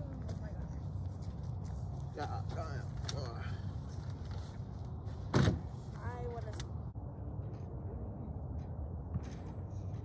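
Outdoor background with a steady low rumble and faint, distant voices. There is one sharp thump about five and a half seconds in.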